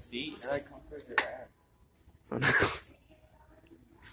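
Mostly speech: brief remarks and a loud, breathy exclamation about two and a half seconds in, with a short squeak about a second in.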